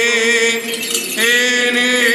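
Greek Orthodox Byzantine chant by men's voices: a steady held drone under a melodic line. The melody breaks off briefly about half a second in and comes back just over a second in, while the drone keeps sounding.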